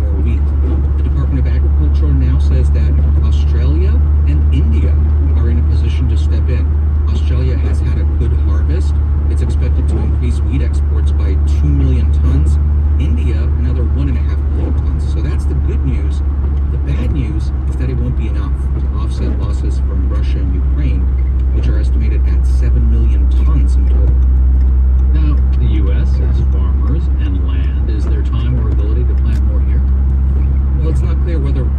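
Car driving on a wet highway, heard from inside the cabin: a steady low road and engine drone, with a radio voice talking faintly underneath.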